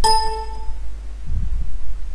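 A single bright ding that starts suddenly and rings out in under a second. A short low thump follows about a second and a half in, over a steady low hum.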